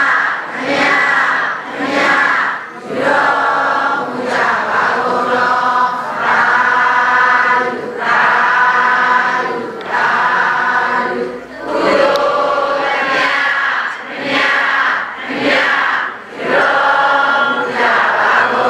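A large congregation chanting Buddhist prayers together in unison. The many voices move in steady phrases a second or two long, with short breaks for breath between them.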